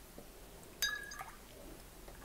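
A single light clink with a brief ringing tone about a second in, like a small hard object tapped against glass or metal, in an otherwise quiet room.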